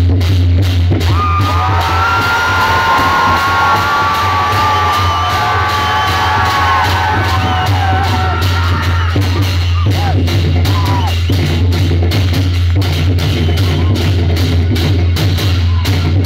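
Dhime (dhimay), the Newar double-headed barrel drums, beaten fast and hard by a group of drummers together with clashing hand cymbals in a dense, continuous rhythm. A held ringing tone rides above the drumming for several seconds in the first half.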